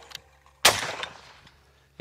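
A single shot from a Mossberg Gold Reserve Super Sport 12-gauge over-under shotgun, fired at a flying clay about half a second in. The report fades away over about a second.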